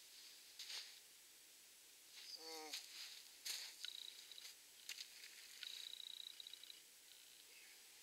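Quiet winter woods with a few faint taps, and a high, rapid chittering trill from a small bird heard twice, a little under two seconds apart.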